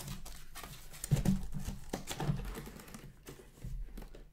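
Cardboard card boxes being handled: sealed hobby boxes lifted out of a cardboard shipping case and set down on a stack, giving a string of taps, knocks and cardboard scrapes, with a louder knock just over a second in.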